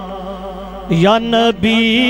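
A man singing a naat (Islamic devotional song) into a microphone. A long held note with vibrato fades away, then he starts a new line about a second in.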